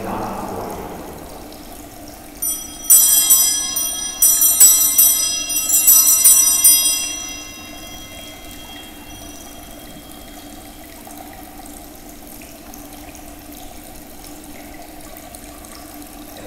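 Altar bells, a cluster of small hand bells, shaken in three bursts of bright ringing over about four seconds, marking the elevation of the host at the consecration of the Mass.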